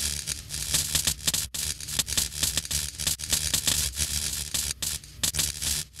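Dense crackling and hissing with a low hum underneath, a fire-and-sparks sound effect. It starts abruptly and drops away near the end.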